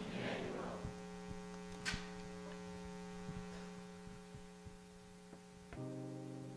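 Steady mains hum from the sound system, with one sharp click about two seconds in. A sustained keyboard chord comes in just before the end.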